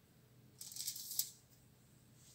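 Aluminium foil crinkling briefly: a crisp rustle lasting about two-thirds of a second, ending in a sharper crackle.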